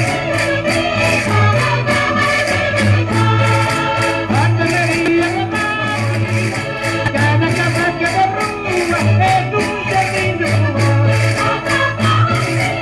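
Live Portuguese Minho folk-dance music played by a rancho folclórico ensemble, with a quick, steady beat of sharp percussion strokes, about four a second, over a continuous low bass line.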